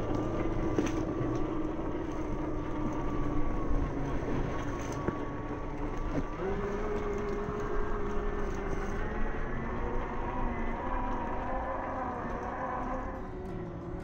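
Brushless outrunner motor and gear drivetrain of an RC rock crawler whining as it crawls over rock. The pitch steps up about halfway through as throttle comes on, then the whine eases near the end.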